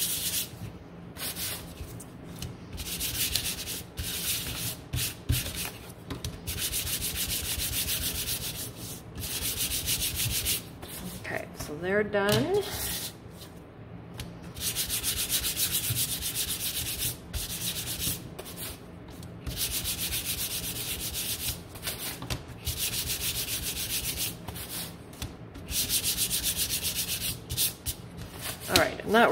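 Sanding sponge rubbed rapidly back and forth over painted wooden cutouts, distressing the paint. It comes in several bouts of quick strokes with short pauses between them while the pieces are moved and turned.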